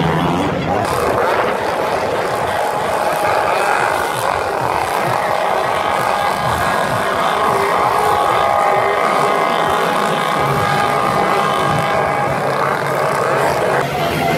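Motocross bike engines running on the race track, a steady drone of several engines at high revs, over the crowd's voices.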